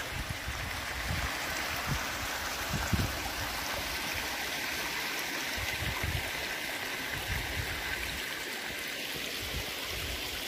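Shallow hot-spring runoff stream running over mud and stones, a steady rush of water with a few soft low thumps.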